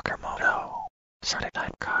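A whispered, breathy voice speaking a few short words in bursts, with silent gaps between them.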